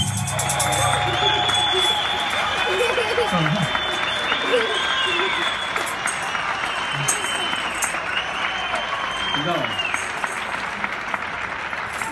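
Neighbours clapping and cheering from the surrounding apartment balconies, with scattered voices calling out, the applause slowly dying down.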